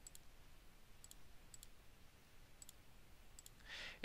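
Near silence broken by several faint, sharp computer mouse clicks spaced about a second apart, as center lines are placed in a CAD drawing.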